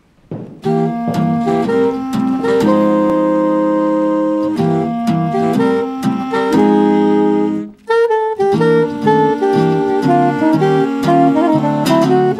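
Swing jazz played on saxophones and clarinet over guitar, with long held chords. The music breaks off suddenly just before eight seconds in and comes back in about half a second later.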